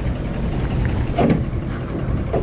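Wind buffeting the microphone, a steady low rumble, with one short pitched sound and a couple of faint clicks about a second in.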